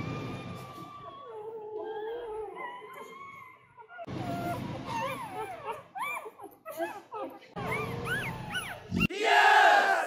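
Newborn Rottweiler puppies crying: a string of short, high-pitched squeaking whines that rise and fall, ending in one loud, long squeal near the end. They are hunger cries from puppies a day old, wanting to nurse.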